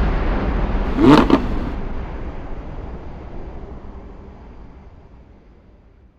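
Car-themed intro sound effect: a rumbling noise that fades out steadily over several seconds, with a short, loud rising engine rev about a second in.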